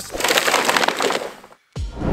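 A loud, crackling noise burst that fades over about a second and a half and then cuts off into a moment of silence.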